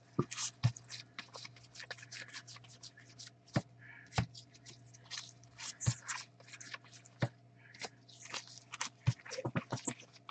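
2019 Topps Series 2 baseball cards being flipped and slid off a stack in gloved hands: a quick stream of short papery swishes and clicks, with a few sharper snaps along the way.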